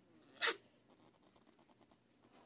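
A tiny Manx kitten sneezing once, a short sharp burst about half a second in. It is a sign of the upper respiratory infection she has not shaken off.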